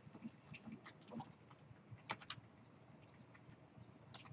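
Faint computer keyboard keystrokes and clicks as lines of code are indented with the Tab key, with a quick cluster of sharper clicks about two seconds in.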